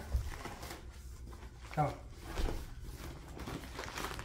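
Deflated vinyl inflatable ball pit rustling and crinkling as it is unfolded and spread out by hand, with a couple of soft thumps.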